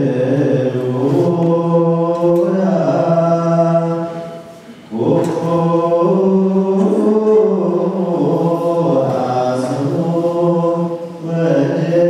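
Congregation and clergy chanting an Eritrean Orthodox liturgical hymn together, in long held and gliding notes. The singing breaks off briefly about four and a half seconds in, then resumes.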